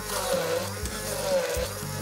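Stick blender running in a tall plastic beaker, pureeing onion, garlic, ginger and chilli into a curry paste, over background music.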